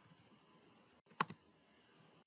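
Computer keyboard: a quick pair of key clicks a little over a second in, faint and otherwise near quiet.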